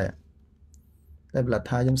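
A voice speaking Khmer, with a pause of about a second and a half in which a single faint click sounds about 0.7 s in.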